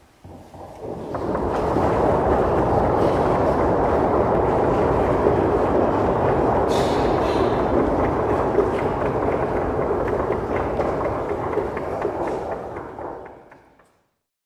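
Audience applauding: a dense patter of many hands clapping builds over the first second or two, holds steady, and fades away near the end.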